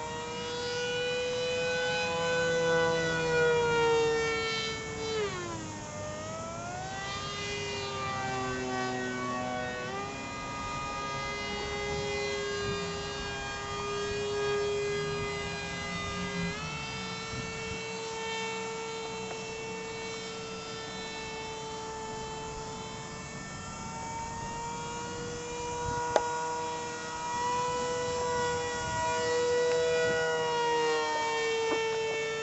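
Radio-controlled model airplane's motor and propeller whining steadily in flight. The pitch falls and climbs back about five to eight seconds in, then jumps in small steps near ten and sixteen seconds as the throttle and the plane's passes change.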